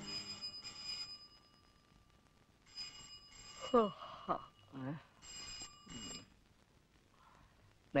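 Desk telephone ringing in double rings, three pairs in all, then stopping. A man's voice is heard briefly between the second and third pairs.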